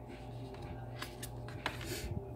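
Oracle cards handled on a wooden tabletop: a few light clicks and snaps of card stock, then a brief scrape as a card is slid off the deck and lifted to be turned over near the end, over a low steady hum.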